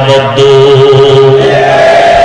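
A man's voice holding one long chanted note at a steady pitch, the drawn-out sung style of a Bengali waz sermon, fading out near the end.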